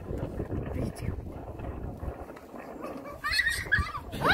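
Indistinct low talking and murmuring from people close by. About three seconds in there is a brief high-pitched voice.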